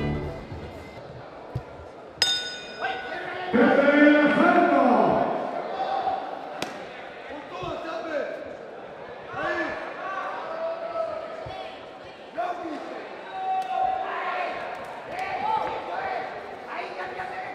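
A boxing-ring bell struck once, about two seconds in, ringing on briefly. Loud shouting voices in a large hall follow, in bursts, with a few sharp thuds.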